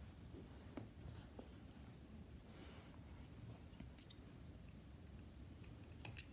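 Near silence: room tone with a few faint ticks and a soft rustle about halfway through, from yarn being drawn through crocheted stitches with a darning needle.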